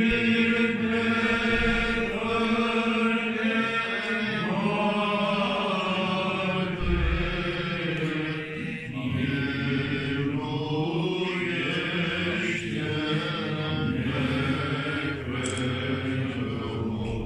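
Orthodox liturgical chant sung by voices in long, slowly moving held phrases.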